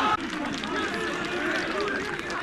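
Several voices of footballers and spectators shouting and calling over one another at the same time, with no single clear speaker.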